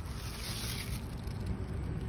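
Wind buffeting a phone microphone outdoors: a steady low rumble, with a brief rustling hiss about half a second in.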